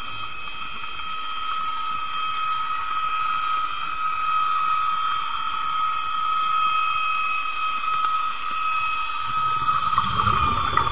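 Steady high-pitched whine made of several held tones over a hiss, heard underwater, growing slightly louder; a low rushing sound comes in just before the end.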